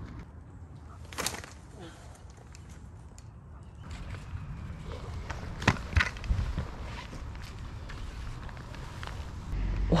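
A pole-mounted slingshot launching a throw ball: a sharp snap about a second in, then a thin high whine for about two seconds as the throwline pays out. Two knocks follow around six seconds in.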